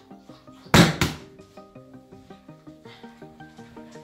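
A folding smartphone in a shock-absorbing protective case dropped from arm's height, hitting the floor with one sharp thud about three-quarters of a second in, over background music.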